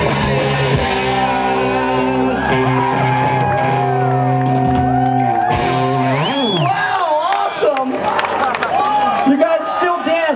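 Live rock band with electric guitars holding a loud sustained final chord, which ends with a sliding pitch about five and a half seconds in, followed by shouting and cheering voices.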